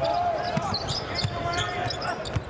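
Arena sound of a live basketball game: a ball being dribbled on the hardwood court over a steady crowd murmur, with a few voices.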